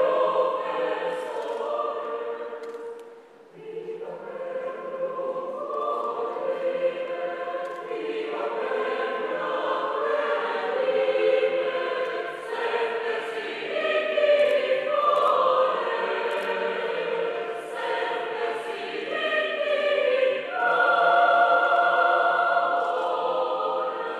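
A choir singing a slow piece in held, sustained phrases, with a short break between phrases about three and a half seconds in.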